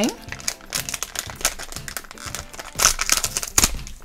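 Crinkling and crackling of a foil blind bag being handled and torn open by hand, in irregular rustles with the loudest bursts about three seconds in.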